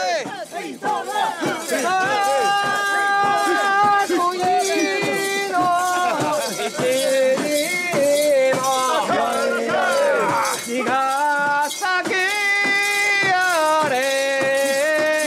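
A voice singing a festival song in long held notes that step up and down, over a fast, busy metallic jangling and rattling from the crowd around the portable shrine.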